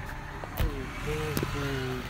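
Low, steady rumble of road traffic, with a sharp click about half a second in.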